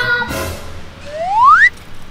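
Edited-in cartoon sound effect over background music: a short swish, then a loud rising whistle glide about a second in that cuts off sharply.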